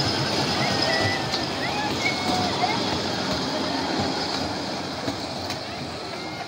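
Small ride-on park train of barrel cars rolling along its track, a steady rumble and rattle of wheels that fades a little as it moves away, with a few short squeaks and people's voices over it.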